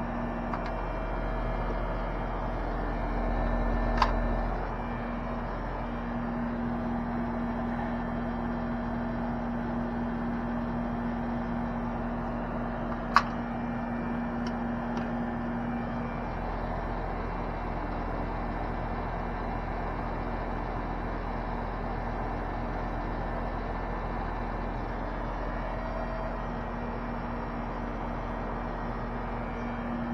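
Air conditioner condensing unit running with a steady hum. Two sharp clicks cut through it, about four seconds in and again, louder, about thirteen seconds in, as a valve cap or fitting is handled.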